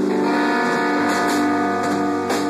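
Live rock band playing loud: an electric guitar holds a sustained, ringing chord over the drums, with a few cymbal hits about a second in and near the end.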